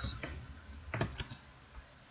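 A few keystrokes on a computer keyboard, most of them clustered about a second in.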